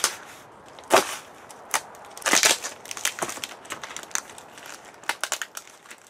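Scissors cutting open a taped cardboard box: a series of sharp snips and crunches of blade through packing tape and cardboard, with a longer tearing rasp around two and a half seconds and a few lighter clicks near the end.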